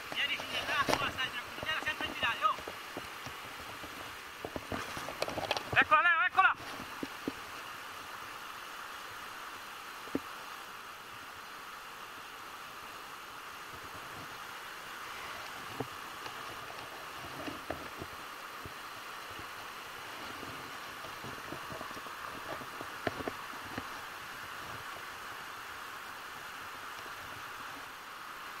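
Fast river water running over rapids and a small weir: a steady rushing hiss throughout, with a few brief human exclamations in the first seven seconds.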